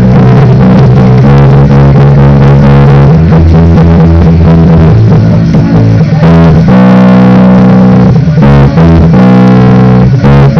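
Electric bass guitar playing a punk rock bassline in E major, loud held low notes that change every second or two, with a couple of short breaks.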